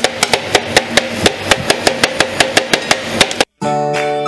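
Two steel spatulas chopping watermelon on the stainless steel cold plate of a rolled ice cream machine: a fast, even run of sharp metallic taps, about six a second, that stops abruptly about three and a half seconds in. Background music with held flute-like notes follows at the very end.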